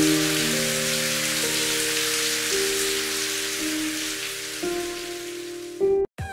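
Steady rain splashing on a hard wet surface, mixed with soft instrumental music of slow, held notes that change about once a second. Both fade slowly, and near the end they give way to a different, louder tune.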